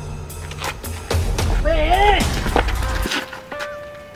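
Film-teaser soundtrack: a low droning score with a string of sharp hits, and a short wavering cry, rising then falling in pitch, about two seconds in. The drone cuts off suddenly near the three-second mark, leaving thin held tones.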